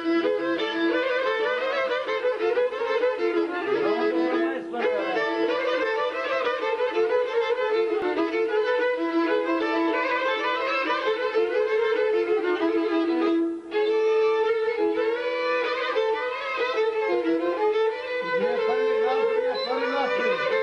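A large group of gadulkas (Bulgarian bowed folk fiddles) playing a folk tune in unison over a steady drone, with a brief break about two-thirds of the way through.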